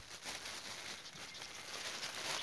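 Thin clear plastic bag crinkling and rustling as pieces of bread are shaken out of it onto a sheet of cardboard.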